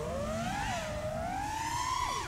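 NewBeeDrone Smoov 2306 1750kv brushless motors on a 6S FPV quad, spinning Hurricane 51466 props, whining in flight. The pitch climbs steadily as the throttle comes up, with a brief wobble about two-thirds of a second in.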